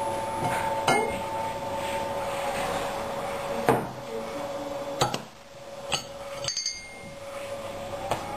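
Glass beer bottle being handled and opened on a wooden table: a handful of sharp clicks and knocks of glass and metal, over a steady two-note hum that stops about five seconds in.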